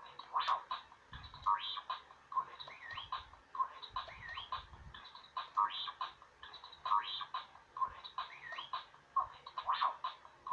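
Star Wars R2-D2 Bop It toy playing its game loop: R2-D2-style electronic beeps and swooping, warbling chirps over a steady beat, repeating about once a second.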